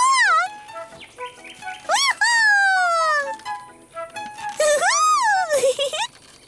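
A high cartoon voice giving three long swooping calls, each rising then falling in pitch, about two seconds apart in time with the swing, over soft background music.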